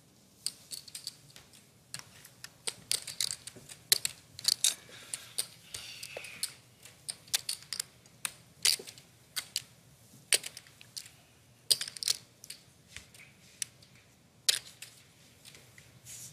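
Poker chips clicking against one another as a player handles them at the table: many short, sharp clicks, irregular and often in quick runs.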